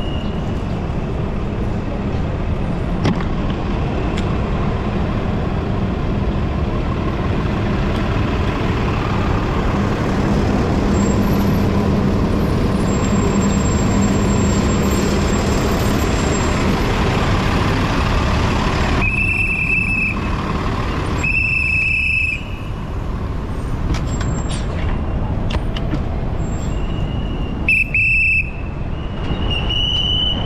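Street traffic heard from a moving bicycle in dense city traffic: a steady noisy rumble of engines, tyres and wind on the camera, with a low hum while riding beside a bus. Several short high-pitched squeals come about two-thirds of the way in and again near the end.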